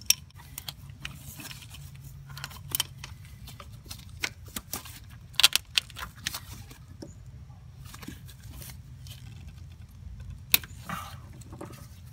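Adjustable wrench clinking and scraping against a turbo oil line banjo bolt and the metal around it while it is fitted and worked in a tight engine bay. The clicks come at irregular moments, with a few sharper clinks about five and a half seconds and ten and a half seconds in, over a faint steady low hum.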